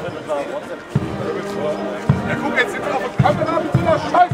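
Marching band music at a shooting-club parade, its bass drum thudding roughly once a second, with people talking close by.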